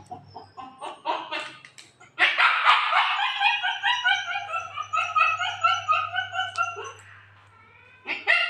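Repeated animal calls, loudest and densest from about two seconds in, dying away shortly before the end.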